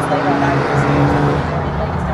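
Engine and road noise inside a moving taxi cab, a steady low hum with a voice faintly in the background.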